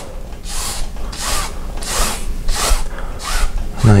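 A wide flat paint brush swished across a wet oil-painted canvas in long horizontal strokes. It makes about five short scraping hisses, one every half second or so.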